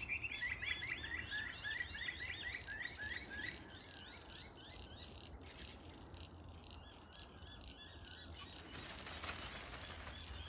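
A small bird singing a quick, continuous series of chirps that fades out after about four seconds. Near the end there is crackly rustling, as of a plastic bag being handled.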